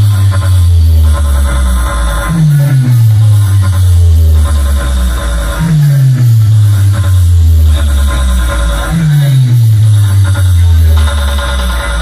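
Electronic dance music played loud through a large DJ box sound system, with deep bass notes that slide downward in pitch again and again every few seconds under a steady beat.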